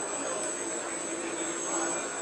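Steady, even background noise of a busy exhibition hall, with distant voices and a steady high-pitched whine.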